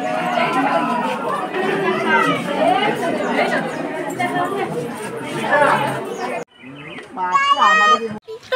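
Many people talking at once, a steady crowd chatter of overlapping voices. About six and a half seconds in it cuts off abruptly, and a single high-pitched voice is heard calling out near the end.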